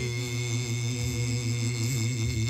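A congregation singing a slow hymn, holding long notes with a slight waver, over a steady sustained accompaniment; a new chord begins right at the start.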